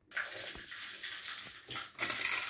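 Water being poured into a steel bowl of chopped onion, green chilli and tomato: a steady splashing rush that starts suddenly just after the beginning.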